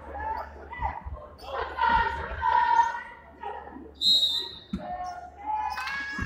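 Basketball bouncing on a hardwood gym floor while voices shout and chant in the echoing hall. A referee's whistle blows briefly about four seconds in.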